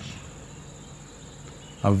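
A cricket trilling steadily in the background, a constant high-pitched buzz, through a pause in speech; a man's voice starts again near the end.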